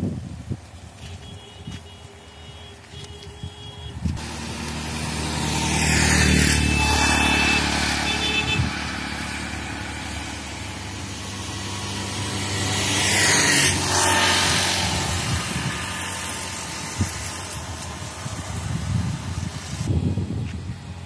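Motor vehicles passing close by on a road, twice: an engine hum builds and the sound swells and fades about six seconds in, then again about thirteen seconds in.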